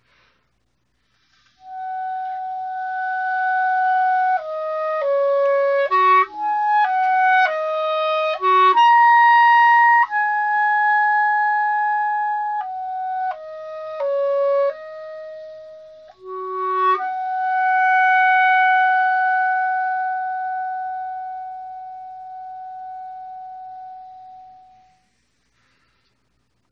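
Solo clarinet playing a slow melodic phrase: a held opening note, then a passage of notes leaping up and down, and a long final note that fades away over several seconds.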